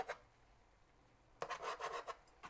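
A faint scraping rustle starting about two-thirds of the way in: a thin metal skimmer handle pushed down through boiled, drained long-grain rice in a stainless steel pot, poking steam vents.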